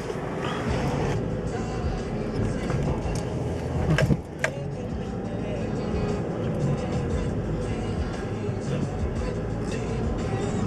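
Background music over the steady road and engine noise of a moving car, heard from inside the cabin, with one short sharp click about four seconds in.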